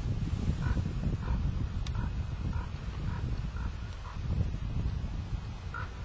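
A series of short, faint chirps, roughly every half second and then one more near the end, from a bird calling, over a steady low rumble.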